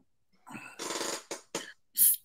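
A person's short, breathy vocal sound: a noisy burst lasting about half a second, then two brief ones near the end.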